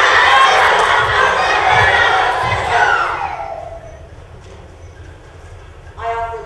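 Loud audience reaction: a crowd of young voices cheering and shouting, fading away after about three seconds.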